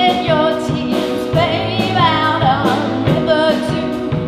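A woman singing into a microphone over a band, with drums keeping the beat; her held notes waver with a wide vibrato.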